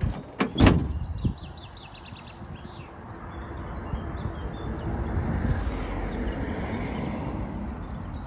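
Two sharp metal clunks about half a second in, as the tailgate of a Mitsubishi L200 pickup drops open onto its steel cable stays. A steady rushing noise follows and swells in the middle, and a bird chirps rapidly during the first second and a half.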